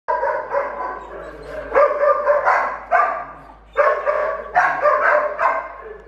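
A dog barking repeatedly in high, drawn-out barks, in three bursts of two or three barks each.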